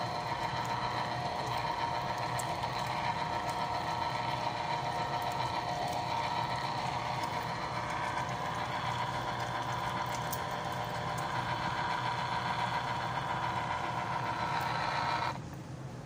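Electric citrus juicer's motor running with a steady whine as orange halves are pressed onto its spinning reamer. The whine drops away sharply near the end.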